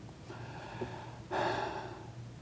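A man's short audible in-breath about a second and a half in, close on a lapel microphone, over quiet room tone.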